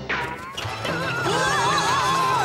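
Cartoon soundtrack: a quick falling whistle-like glide at the start, then several high wavering, wobbling cries over music.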